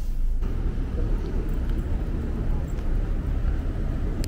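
Steady low rumble of a parked car running, heard inside its cabin.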